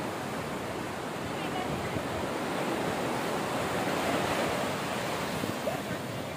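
Ocean surf washing up a sandy beach, swelling to its loudest a little past the middle and easing off near the end.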